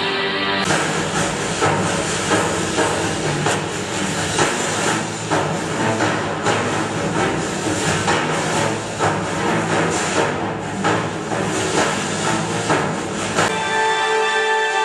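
Music: a dense, hissing passage with drum strikes roughly every half second to second, which gives way to a steadier tonal melody near the end.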